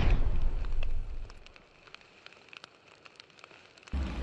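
Fire sound effect for a flaming title animation. A loud whooshing rumble dies away over the first second, then faint, scattered crackles follow, and a new whoosh starts at the very end.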